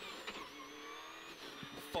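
Subaru Impreza rally car's flat-four engine running at speed under a flat-out run, heard from inside the cabin, its note stepping down about one and a half seconds in.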